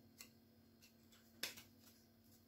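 Faint handling of a stack of trading cards, cards slid past one another by hand, with two soft clicks, the louder one about a second and a half in.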